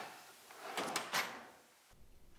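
Drawer of a metal tool chest sliding shut, with a couple of knocks around a second in as it closes.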